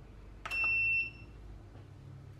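KitchenAid four-slice digital toaster's Toast button pressed: a click, then a single half-second electronic beep as the toasting cycle starts.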